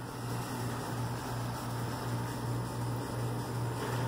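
Steady low background hum with an even hiss, unchanging throughout, with no distinct event.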